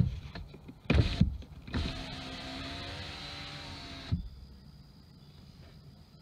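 Ford Mustang electric power window in operation: a click, a knock about a second in, then the window motor runs steadily for about two seconds and stops with a clunk as the glass reaches its end of travel.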